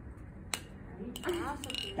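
A single sharp click about half a second in, then another lighter click and a brief bit of voice in the second half.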